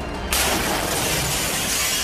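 A sudden loud burst of harsh, dense noise begins about a third of a second in and holds steady: the blast and debris of an explosion in combat footage.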